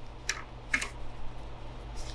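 A metal carburetor slide cap being screwed on by hand: two short, light clicks or scrapes about half a second apart.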